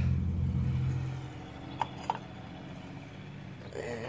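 A motor vehicle engine's low, steady hum fading away over the first second or so, followed by two light clicks about two seconds in.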